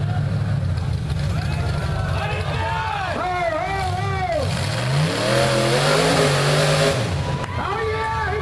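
Rock bouncer buggy's engine running with spectators shouting over it. About four and a half seconds in, the revs climb and a loud rushing hiss joins for a couple of seconds, then drops away.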